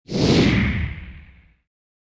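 A single whoosh transition sound effect. It starts suddenly, with a low rumble under a hiss that slides down in pitch, and fades out after about a second and a half. It marks a jump cut in the edit.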